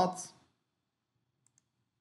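A man's voice trailing off in the first half-second, then near silence broken by two faint mouse clicks in quick succession about one and a half seconds in.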